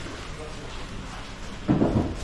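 HO scale model trains running on KATO Unitrack, a steady rolling rumble, with a brief louder burst near the end.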